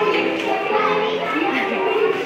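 Young children's voices chattering, with music playing underneath.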